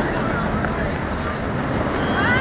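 Busy city street ambience: a steady din of car and taxi traffic mixed with the indistinct voices of passers-by.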